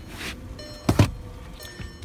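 Handling noise from a phone being moved around inside a car: faint rustling, then two quick, sharp knocks close together about a second in.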